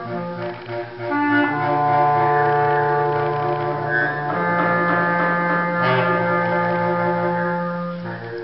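Clarinet and bass clarinet improvising together, holding long overlapping notes: a low held tone under higher sustained tones. It grows louder about a second in, and the low note steps up about halfway through.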